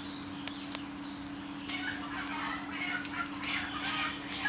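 Birds calling, busier from about halfway through, over a steady low hum with a few sharp clicks.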